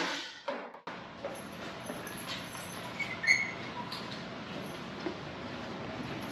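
Steady room noise with footsteps and handling sounds as someone walks through a doorway, and a short squeak about three seconds in.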